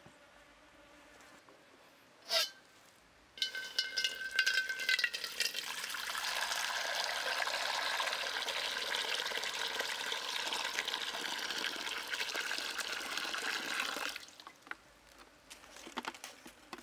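Water poured in a steady stream into an empty steel wok on a wood fire. It starts about three seconds in with a ringing metallic note as the stream first strikes the bare steel, goes on as an even splashing pour, and cuts off suddenly near the end. A brief sharp knock comes just before the pour begins.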